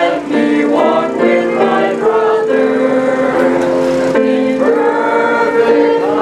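Music with a choir singing: several voices holding notes together, moving to a new chord every half second or so.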